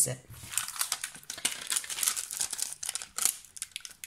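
Clear plastic stamp sheets crinkling as they are handled, a dense run of short crackles.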